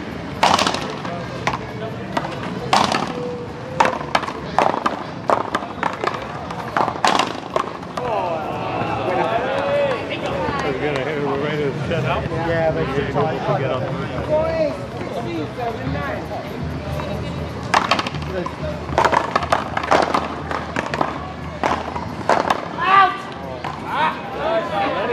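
One-wall paddleball rally: solid paddles crack against the ball and the ball smacks the wall in a string of sharp hits, several in the first seven seconds. A stretch of background voices follows, then more paddle and wall hits near the end.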